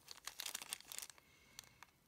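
Small plastic zip-lock bag of wooden damage counters crinkling faintly as it is handled and turned, a run of quick crackles that thins out after about a second and a half.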